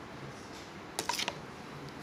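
A short cluster of light plastic clicks and taps about a second in, from clear plastic pouring cylinders being handled and set down on the table. Faint room tone the rest of the time.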